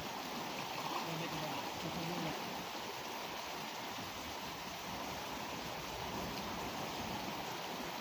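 Steady flowing of a fast river current, with faint voices in the first couple of seconds.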